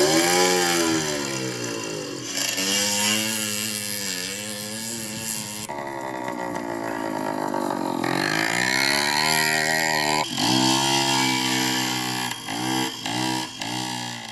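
Small petrol motorbike and scooter engines revving up and down hard. Several different machines are heard one after another, with abrupt changes between them.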